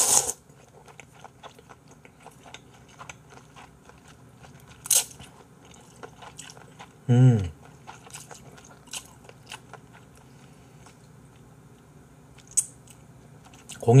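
Close-up mukbang eating sounds: cold naengmyeon noodles in broth slurped with chopsticks in a few loud slurps, at the start, about five seconds in and near the end, with soft chewing between them. A short closed-mouth "mm" comes about seven seconds in.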